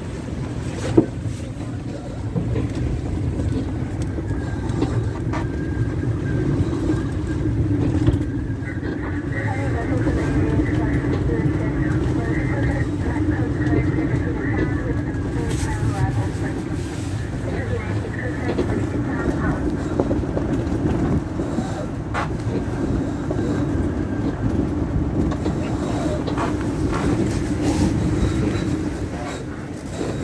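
Strong wind buffeting the microphone and water rushing along the hull of a sailboat running in gusts of up to 38 knots, a steady loud roar. A single sharp knock about a second in.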